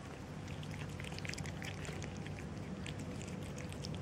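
Two cats, a tortoiseshell and a calico, crunching dry kibble from a plastic tub: a dense, irregular patter of small crisp clicks over a low steady rumble.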